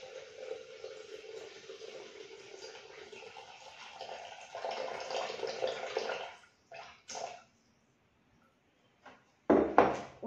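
Water poured in a steady stream into a Thermomix's stainless-steel mixing bowl through the lid opening, filling it to 400 g; the pour stops about six and a half seconds in, followed by two short sounds.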